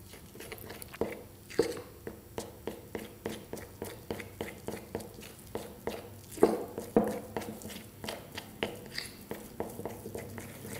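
A metal fork mashing and stirring a thick almond-butter and powder paste in a ceramic bowl: a steady run of soft squishy strokes and light clicks of metal on the bowl, about three a second, with a few louder knocks about a second in and again around six and a half seconds.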